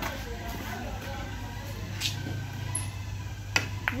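Billiard-hall ambience: a steady low hum with faint voices in the background, and a few sharp clicks, one about two seconds in and two in quick succession near the end.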